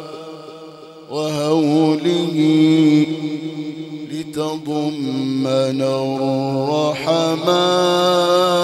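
A man's solo Arabic religious chanting in the ornamented Egyptian style, with long held notes and wavering melismatic turns. The first second is softer, and a new phrase starts loudly about a second in.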